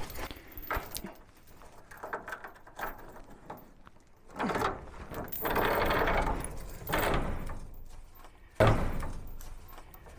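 Quarter-inch zinc-plated steel chain rattling and clinking as it is handled at a wooden beam, in several bouts: faint clinks at first, louder rattling from about four seconds in, and a sudden burst near the end.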